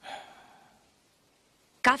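A single breathy sigh that fades away within about a second.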